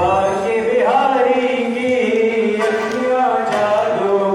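Devotional kirtan singing: voices chanting a melody in long, drawn-out notes that glide from pitch to pitch.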